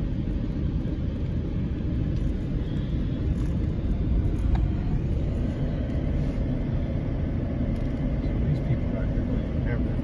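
Steady low rumble of a vehicle driving on a dirt road, heard from inside the cabin: engine and tyre noise.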